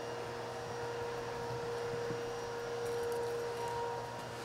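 Room tone: a steady hum with a constant pitch over a faint even hiss, unchanging throughout.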